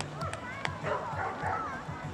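A dog barking and yipping in short, pitched calls over distant voices.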